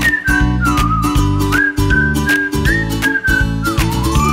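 Upbeat advertising jingle: a whistled melody with short slides between notes over a steady beat and bass.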